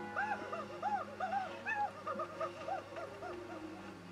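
A high-pitched cartoon character's voice squeaking out a quick run of about a dozen short rising-and-falling syllables, dying away near the end, over soft background music from the cartoon.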